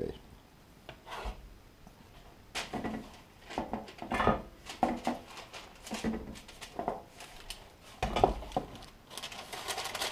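Metal bench scraper scraping and tapping on a floured wooden cutting board as sticky dough is worked loose, with irregular knocks and rubbing from handling on the board.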